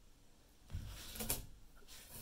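Faint handling noise of an aluminium-cased battery pack being turned over and set down on a desk: a low bump about three quarters of a second in, then a short sharp knock or scrape about half a second later.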